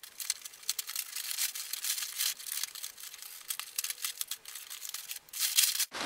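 A plastic mailing envelope being torn open and its contents pulled out: a dry, crackly rustle of many small crinkles and tears of plastic and bubble wrap.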